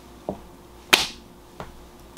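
Items from a subscription box being handled: a light tap, then a sharp slap-like click about a second in, then a softer tap.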